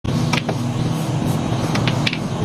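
Pool balls clicking on a mini pool table. The cue tip strikes the cue ball and balls knock together, with one sharp click about a third of a second in, another just after, and a quick pair near the end, over steady background music.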